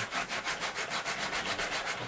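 Green Scotch-Brite scuff pad rubbed rapidly back and forth on a black plastic ammo box, a fast, even scratching that scuffs off the plastic's coating so paint will stick.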